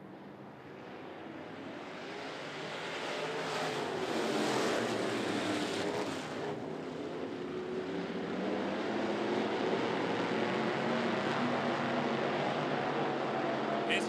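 A pack of dirt-track street stock race cars running together, their engines building in loudness over the first four seconds or so as the field gets on the throttle, then holding a steady, dense drone.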